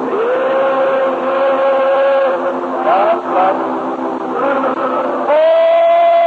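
Congregation singing a slow hymn in long held notes, with a louder voice holding a high note near the end.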